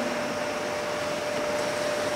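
Steady hiss of room noise with a faint, steady single tone running through it.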